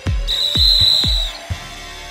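The end of a podcast intro's music: a beat of deep kick-drum hits under a high steady whistle tone held for about a second. The music stops about a second and a half in, leaving a low hum.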